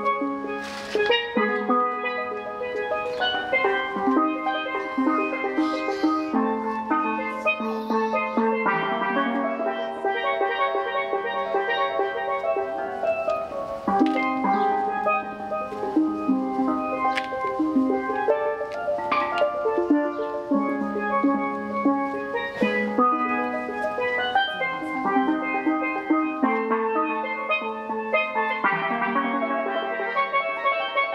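A pair of steel pans played with mallets: quick, rhythmic runs of struck, ringing notes in repeating figures.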